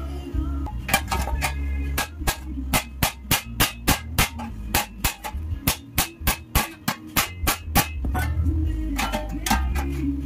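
Rapid hammer blows on the folded edge of a sheet-metal tray, about three a second, with a short pause near the end, over background music with a steady bass line.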